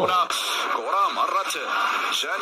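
Speech only: a man talking, his voice thin like a radio or TV broadcast.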